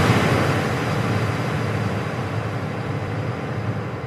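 Sound-design effect of an animated logo intro: a steady wash of noise with a low rumble underneath, slowly fading away.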